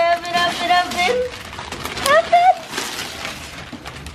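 A long, drawn-out exclaimed 'ohh' that ends about a second in, then a short rising vocal sound about two seconds in, over wrapping paper crinkling and tearing as a gift box is unwrapped.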